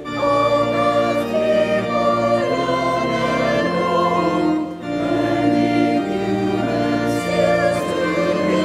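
A church hymn sung by many voices with organ accompaniment, in sustained notes, with a brief breath pause between lines just before the middle.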